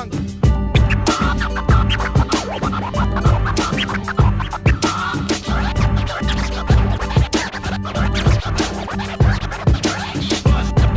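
Turntable scratching: a vinyl record pushed back and forth by hand, and cut in and out at the mixer, in quick rising and falling strokes over a steady hip-hop beat.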